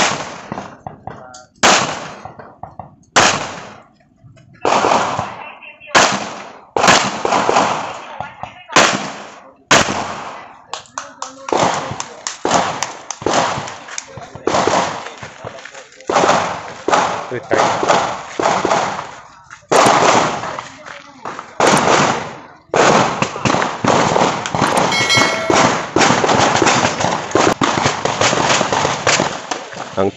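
Handgun shots fired on a timed IPSC practical-shooting stage: single shots about a second or more apart at first, then faster, denser strings of shots from about ten seconds in until near the end.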